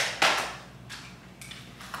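A large cardboard shipping box being handled: two sharp knocks about a quarter second apart, then fainter scraping and a few light taps.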